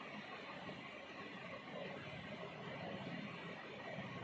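Faint, steady sizzle of hot frying oil in a steel kadhai while fried kachoris are lifted out of it on a wire skimmer.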